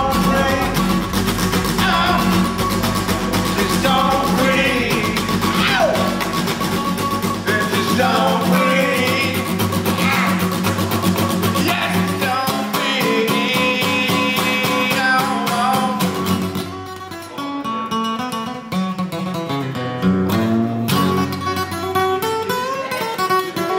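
Music: singing over guitar, with a low bass line that drops out about a third of the way in. From about three quarters in, an acoustic guitar is played on its own, strummed and picked.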